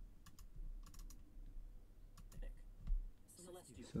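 Computer keyboard keys tapped in a few small groups of quick clicks, over a low hum; a voice starts up near the end.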